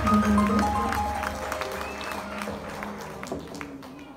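Live stage band ending a song: held keyboard notes change pitch and fade away while the audience claps.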